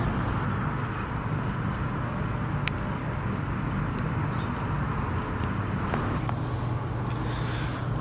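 Steady outdoor background noise, a low hum like distant traffic, with a few faint clicks.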